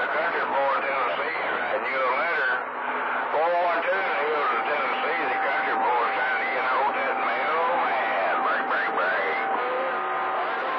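CB radio receiving channel 28 skip: distant stations' voices come in garbled and unintelligible, overlapping in static, with the sound band-limited like a radio speaker. A steady whistle joins the voices about four seconds in.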